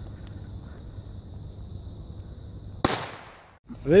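A single firecracker bang, sharp with a short fading tail, about three seconds in, over a steady low outdoor rumble.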